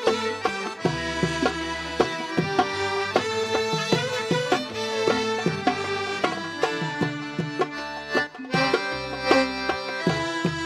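Traditional Sudanese song accompaniment: a bowed violin playing a sustained melody over steady hand percussion.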